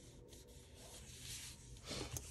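Fingertips rubbing a paper sticker down onto a planner page: a faint, soft rubbing, with a brief louder scrape of hand on paper near the end.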